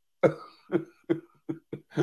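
A man laughing in a string of short, breathy bursts, about six in two seconds, each dying away quickly.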